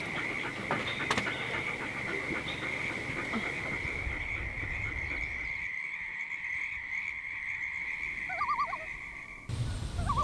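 A chorus of frogs calling in one steady, unbroken band, with a short wavering call about eight and a half seconds in. The chorus cuts off abruptly near the end.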